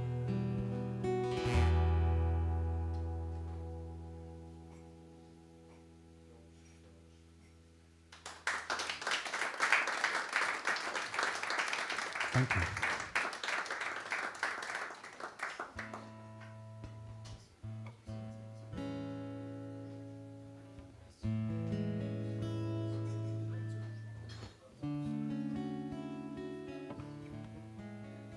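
Acoustic guitar's last chord ringing out and fading away, then audience applause for about eight seconds from about eight seconds in. After that, single notes and chords are picked on the acoustic guitar and left to ring, with short pauses between them.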